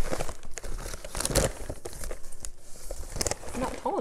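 Large paper flour sack crinkling and rustling as it is handled, a run of irregular crackles.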